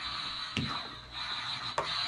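Two short, light knocks, about half a second in and again near the end, over a steady room noise.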